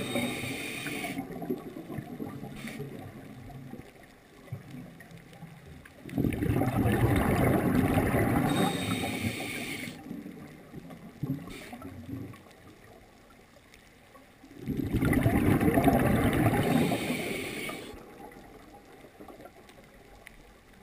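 Scuba diver breathing through a regulator underwater: rushes of exhaled bubbles come in long bursts, one fading at the start, another about six seconds in and a third about fifteen seconds in, each lasting three to four seconds, with quieter stretches between.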